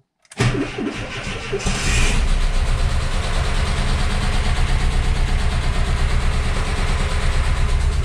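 VW T3 (Vanagon) petrol flat-four cranking on the starter to prime a fresh oil filter, catching about a second and a half in without throttle and settling into a steady idle with a light tick.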